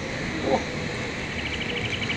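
A small animal calling: a rapid, high, even trill of about a dozen pulses a second that starts past halfway in, over a steady background hiss.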